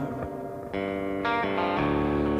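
Music: a brief instrumental break in a rock song, with electric guitar through effects holding ringing chords and new notes coming in three times, between the sung lines.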